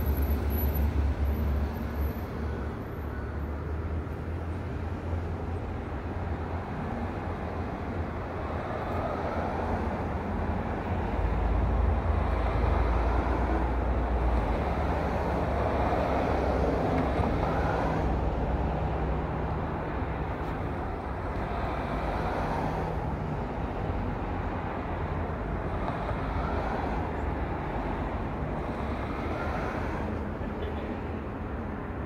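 Road traffic and engine rumble: a steady low drone with vehicles swelling past several times, loudest about twelve to seventeen seconds in.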